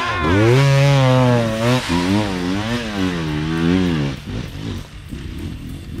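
Enduro dirt bike engine revving hard under load on a steep dirt hill climb, its pitch rising and falling with the throttle, then fading away after about four seconds.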